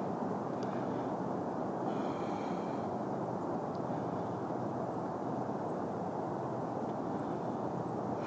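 A steady low rumble with no rhythm and no change in level. A faint, brief high whine shows about two seconds in.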